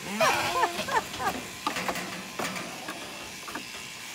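Zwartbles sheep bleating in short wavering calls through the first second or so. Scattered light knocks follow, with a faint steady low hum underneath.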